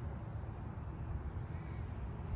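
Steady low rumble of wind on the microphone, with a faint short bird call about one and a half seconds in.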